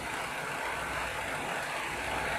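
Narrow-fabric needle loom weaving elastic tape, running with a steady, even mechanical noise.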